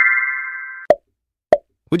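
Quiz sound effects: the held end of a bright rising chime fades out and stops just before a second in. Then two short pops follow, about half a second apart.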